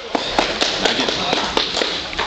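A few people clapping, sharp claps about four a second.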